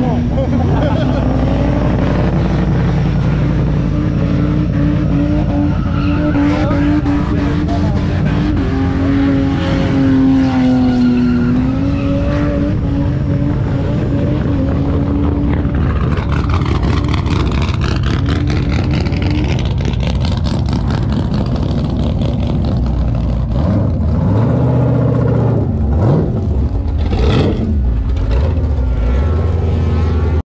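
Modified burnout car engines running loudly, with a steady deep idle note in the first half and revs rising and falling in the second half, sharpest a few seconds before the end.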